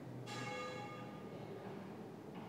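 A faint bell-like ring, struck once about a quarter second in, with several steady tones fading away over about a second and a half.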